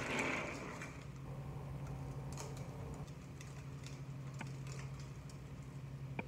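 Quiet background with a faint steady low hum and a few light, scattered ticks.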